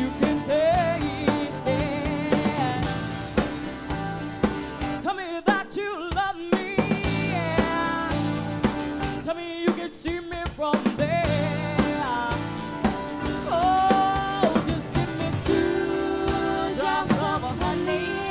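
Live band playing a song with drum kit and guitar, a lead melody bending and wavering in pitch over the beat. The bass and drums drop out briefly twice, about five and ten seconds in.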